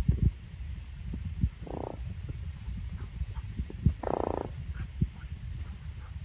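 Steady low wind rumble on the microphone, with a few sharp knocks and two short rough animal sounds. The first comes just before two seconds in; the second, longer one comes about four seconds in.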